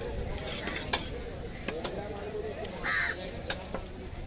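Knife blade tapping and clicking against a large cobia on a wooden chopping block, with several sharp knocks spread through, and a short call about three seconds in.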